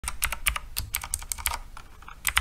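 Computer keyboard typing sound effect: quick, irregular key clicks, about seven a second, accompanying text being typed out.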